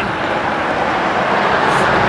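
A car driving past on the street, a steady rush of road and engine noise that grows a little louder toward the end.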